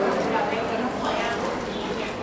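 Voices in a large hall, with light rhythmic taps or knocks underneath.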